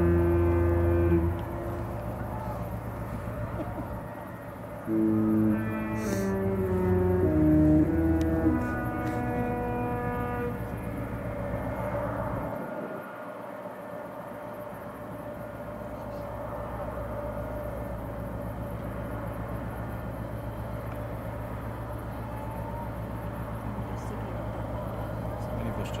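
A cruise ship's horn holding a long note that stops about a second in, then sounding a short tune of stepped notes between about five and nine seconds in. A steady low rumble runs underneath.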